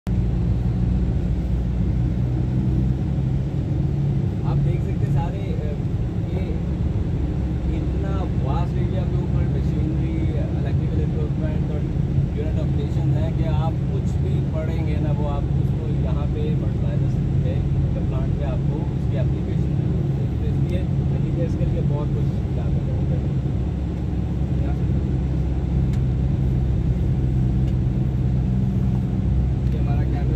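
A steady low mechanical drone with a constant hum in it, with faint voices in the background partway through.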